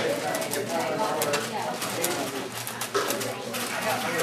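Indistinct chatter of several voices in a large room, with many quick, irregular clicks from a 4x4 puzzle cube being turned.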